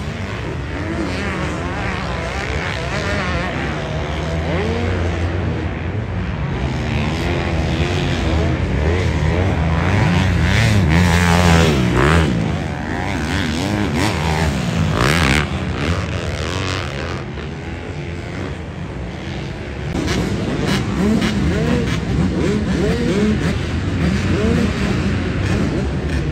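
Motocross dirt bike engines revving up and down through the gears as the bikes race around the track. The sound is loudest about eleven to twelve seconds in, as one bike passes close.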